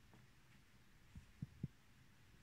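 Near silence with three soft, low thumps in quick succession a little over a second in.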